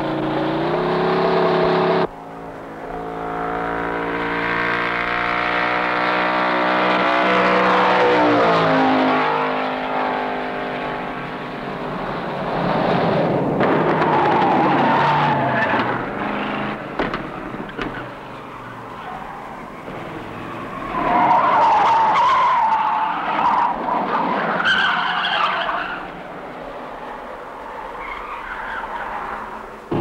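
A car driven hard on a winding road. The engine rises in pitch as it accelerates, then falls away as the car goes past, and the tyres then squeal repeatedly through the bends, loudest a little past the middle.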